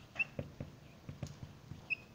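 Dry-erase marker writing on a whiteboard: faint irregular taps and strokes, with two short high squeaks, one near the start and one near the end.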